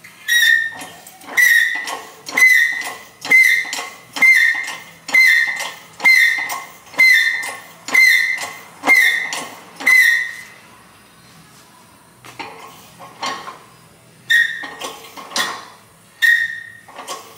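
Repeated sharp metal-on-metal strikes, about one a second, each leaving a high ringing note that dies away. There are about ten in a row, then a pause, then a few more near the end.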